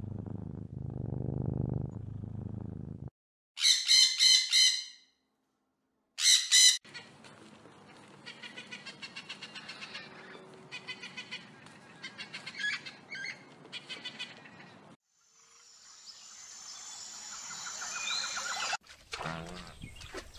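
Scarlet macaws calling: two loud harsh squawks a few seconds in, then a long run of quick repeated chirps and calls. The first three seconds hold a lower, steadier animal call.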